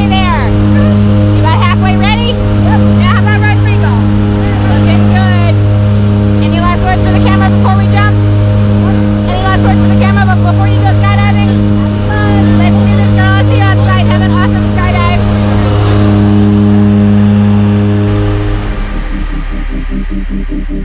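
Jump plane's engine and propeller drone heard inside the cabin, loud and steady with a slow pulsing beat. It cuts off abruptly near the end.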